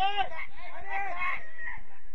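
Shouting voices on a football pitch: several loud, high-pitched calls in quick succession over the first second and a half, then dying away.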